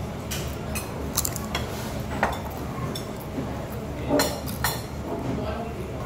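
Scattered clinks and knocks of cutlery, plates and glass at a table, the loudest a little past four seconds in, over a steady hum of restaurant background noise.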